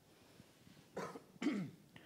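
A man briefly clears his throat with two short coughs, the first about a second in and the second half a second later, after a moment of near silence.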